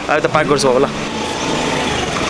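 A few words of speech, then about a second in a motor scooter's engine running as it rides up, a steady drone with a faint held tone.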